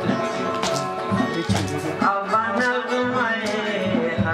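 Khowar folk music: a Chitrali sitar and a harmonium playing over a steady percussion beat, with a male voice starting to sing about halfway through.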